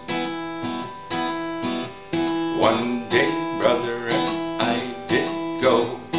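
Yamaha acoustic guitar strummed in a steady rhythm, about two strokes a second, with the chords ringing between strokes.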